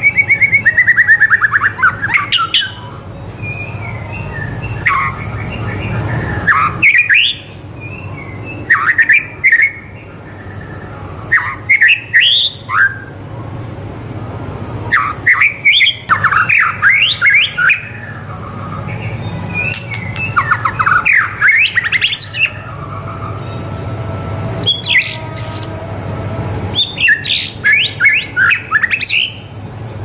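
White-rumped shama (murai batu) in full song: loud phrases a second or so long, repeated every couple of seconds, made of rapid sweeping whistles and fast note runs. It opens with a long falling trill.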